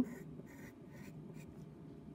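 Faint scratching of a pencil on paper as a long curved line is drawn.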